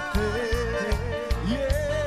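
Cuarteto band playing live: a long held melody note with vibrato, stepping up in pitch about halfway through, over a steady bass-and-drum beat.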